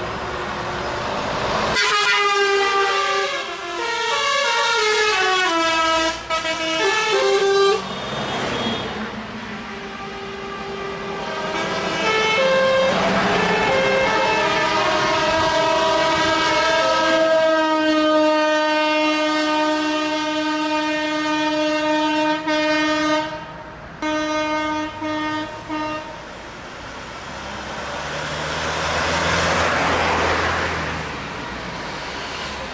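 Tow trucks passing in a convoy, sounding their horns: a horn plays a quick run of stepping notes like a tune in the first several seconds, followed by long held horn blasts and a few short toots. A truck engine and tyres pass close near the end.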